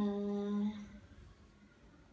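A person humming a steady, level "mmm" that stops under a second in, leaving faint room noise.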